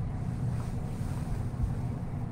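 Steady low rumbling background noise picked up by the microphone, with no speech.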